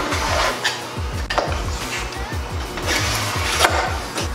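A plexiglass scoring knife drawn along an acrylic sheet in repeated scratching strokes, cutting a groove so the sheet can be snapped along the line. Background music plays underneath.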